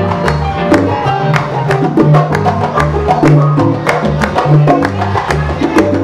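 Salsa band playing without vocals: a bass line moving in held low notes under steady percussion with sharp, regularly repeated clicks.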